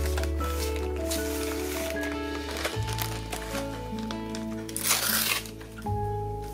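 Relaxing guitar background music with sustained notes and a steady bass line. About five seconds in, a short loud crinkle of a clear plastic packaging sleeve being handled.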